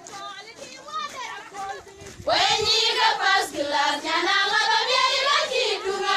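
A group of young women singing together. The singing is softer for about two seconds, then the full group comes in loud.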